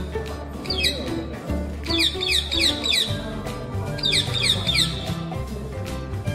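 Parrot chirping in runs of quick, falling calls: once about a second in, then longer runs between two and three seconds and between four and five seconds. Background music with a steady beat plays throughout.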